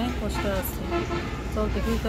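Conversational speech in Bengali, with a steady low hum of background noise.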